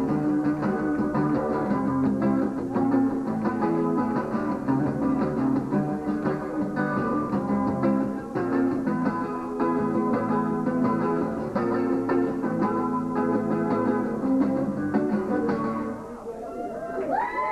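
Steel-string acoustic guitar played solo and unaccompanied, an instrumental passage of quick picked notes, stopping at the end.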